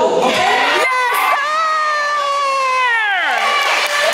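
Crowd cheering, then a single high voice holding one long shout that slides steeply down in pitch near the end.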